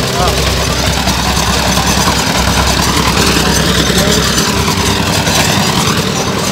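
Engine of a well-drilling rig running steadily, a constant low hum with no change in speed.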